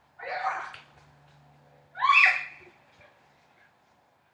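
Two short, high-pitched shrieks from young girls, about a second and a half apart, the second louder.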